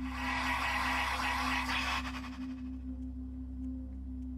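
A car radio's speaker giving off a hiss of static over a low, steady drone. The hiss fades about halfway through.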